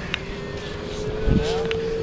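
Wind rumbling on the microphone over a steady, even hum from a distant motor, with a brief stronger gust a little past the middle.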